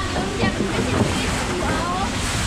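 Fast water running and sloshing in a wild-water ride's flume channel, a steady rushing noise, with brief voices over it.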